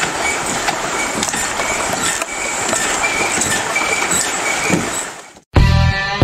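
Steady rushing of a fast mountain river, which fades out about five seconds in; rock music with electric guitar starts just before the end.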